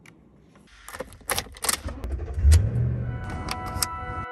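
A few sharp handling clicks and knocks, then a vehicle engine starting with a brief low rumble about two and a half seconds in. A steady held musical note comes in near the end.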